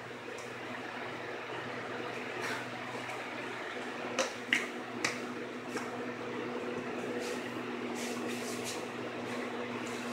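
Steady hiss and sizzle of a pot of mutton, tomatoes and spices cooking on a gas burner, over a low steady hum. A few small sharp clicks come in the middle and again near the end.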